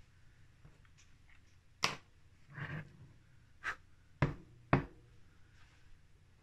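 A handful of short, sharp knocks and taps from a terrain tile and paintbrush being handled on a desk cutting mat, the loudest about two seconds in and two close together a little past four seconds.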